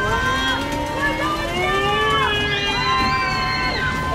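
Several voices screaming and yelling together in long drawn-out cries that slide slowly up and down in pitch, over a low steady rumble.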